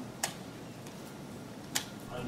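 Two sharp clicks about a second and a half apart, with a few faint ticks between them, over quiet room tone: a key or mouse being clicked on the lectern laptop to step back through presentation slides.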